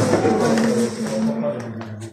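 Raised human voices, one drawn out and held like a long call, with a couple of sharp knocks just before the end.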